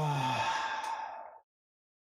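A man's long, breathy sigh with a falling voiced groan at its start. It cuts off abruptly about one and a half seconds in.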